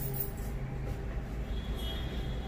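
Eyebrow threading: a twisted thread scraping along the brow and snapping hairs out, with soft quick scratchy clicks over a steady low background hum.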